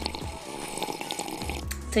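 A woman sipping a drink from a small glass, a wet mouth-and-liquid sound lasting about a second and a half, over background music.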